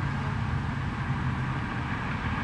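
Steady low background rumble with no distinct events such as a club strike or voices.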